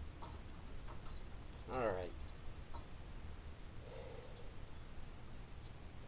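A small dog whimpers once, a short whine that bends in pitch about two seconds in, over quiet background noise.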